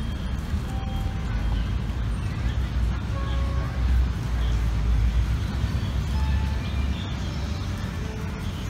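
Outdoor background noise, mostly a low rumble that swells between about four and six and a half seconds in, with faint scattered voice-like or bird-like snatches above it.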